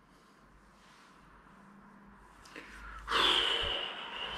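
A man breathing out loudly once, a short sigh about three seconds in, after faint room tone.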